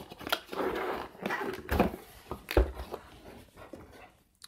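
Cardboard product box being opened by hand: the lid's tab is pulled free and the lid lifted, with scraping and rustling of card and scattered clicks, then two dull knocks, the louder about two and a half seconds in.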